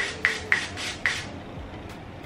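L'Oréal Magic Root Cover Up aerosol spray sprayed into a hairbrush in a run of short hissing bursts, about four a second; the spraying stops a little over a second in.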